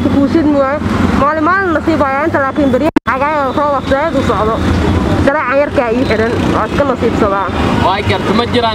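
Speech only: a voice talking steadily into a handheld microphone over a low background hum, with a brief dropout about three seconds in.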